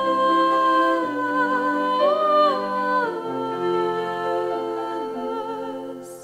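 Two women singing a worship song with piano accompaniment, holding long notes with vibrato. The voices rise briefly about two seconds in, the notes change a second later, and the music grows softer toward the end.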